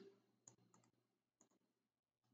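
Near silence broken by about four faint, irregularly spaced clicks of a computer mouse.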